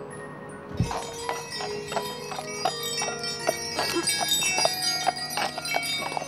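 A low thump about a second in, then sleigh bells on a draft-horse harness jingling irregularly, with many small ringing strikes, as the horses move.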